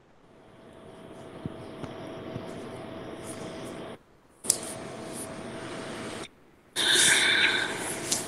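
A steady rushing noise with a faint steady hum comes through a video-call connection from a remote participant's microphone. It cuts in and out abruptly three times. The first stretch swells slowly, and the last, near the end, is the loudest.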